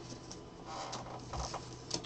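Faint handling of a wooden card box and its lid panel: light scrapes and a few soft knocks, the clearest near the end.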